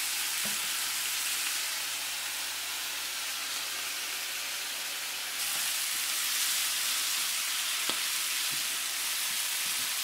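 Squid and onions sizzling in a hot frying pan with a steady high hiss, just after cooking sherry has been added; the sizzle grows louder about halfway through. A spatula stirs the pan, giving a few faint taps.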